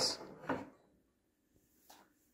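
A short rattle of a coated-wire under-shelf basket rack against a wooden desk as it is hooked on and let go, about half a second in, then a faint tap near the end.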